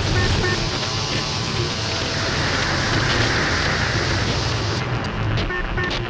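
Experimental noise music built from found radio sounds, electric bass and a Buchla synthesizer: a dense, steady wash of hiss over a low drone.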